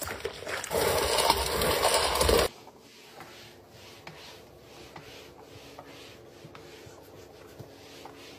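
Spin mop head sloshing and churning in a bucket of foamy water, cut off abruptly about two and a half seconds in. Then a round microfiber mop pad rubbing back and forth across a plank floor, much quieter, in soft repeated strokes.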